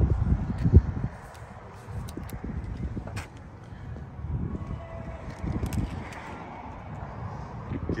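Uneven low rumbling handling and wind noise on a hand-held phone microphone as it is carried along the side of an SUV, with a sharp thump just under a second in.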